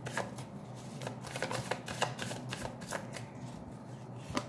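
A deck of tarot cards shuffled by hand: a quick run of soft card clicks and flutters that thins out near the end.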